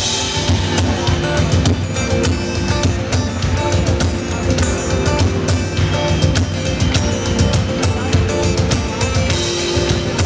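Live pop band playing through a PA, a steady drum-kit beat with kick and snare driving the music and guitar over it.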